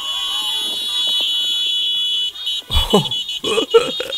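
Many car horns honking together: held steady, then broken into short toots about two and a half seconds in. The honking is celebratory.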